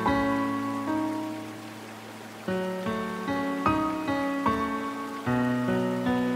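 Steady rain with soft, slow instrumental music over it: notes struck and left to ring out. The notes fade into a quieter lull, then new notes come in about two and a half seconds in.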